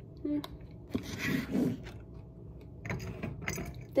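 A metal spoon clinking and scraping in a glass jar, with a few light clicks and a knock as the jar is set down on a plastic cutting board.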